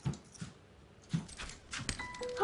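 A few short, soft thumps and rustles from a man hurriedly moving about and pulling his clothes together, scattered through the moment with a cluster of clicks near the end.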